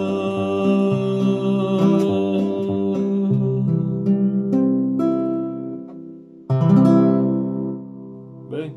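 Nylon-string classical guitar strummed in chords that change as the song closes, then one final strummed chord about 6.5 seconds in, left ringing and fading.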